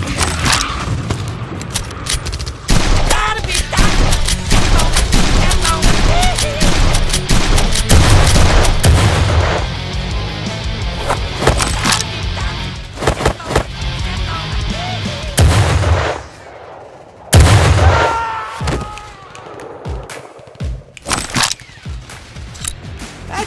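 Background music with repeated bursts of gunfire-like shots from toy blasters being fired; the shots thin out and drop away briefly after about sixteen seconds, then a single loud blast comes back in.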